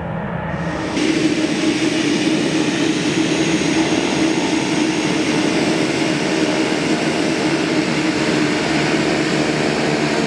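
Twin-engine Beechcraft King Air turboprop taxiing in at close range: a steady drone of turbine whine and spinning propellers, louder from about a second in.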